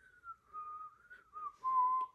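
A person whistling a short tune: a few notes stepping downward in pitch, ending on a longer held lower note near the end.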